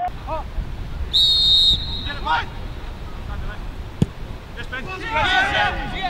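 Referee's pea whistle blown once in a short shrill blast about a second in, signalling the restart. About three seconds later comes a single thud of the ball being kicked, then players shouting.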